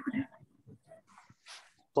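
A man's voice trailing off at the start, then a pause of a little under two seconds with only faint scattered sounds and a brief soft hiss, before his speech resumes at the very end.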